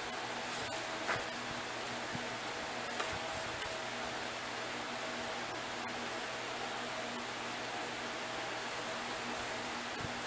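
Steady hiss of room noise with a faint hum underneath, and a few faint taps in the first few seconds as a small hardcover book is handled.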